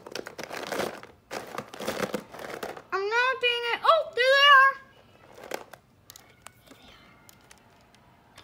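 Crinkling and rustling of toys being handled for the first few seconds, followed by a child's high-pitched vocal squeal or sing-song with gliding pitch, then a few light clicks as a small plastic figure is set down on the wooden table.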